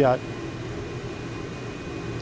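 Steady hum with a faint hiss from a running exhaust fan.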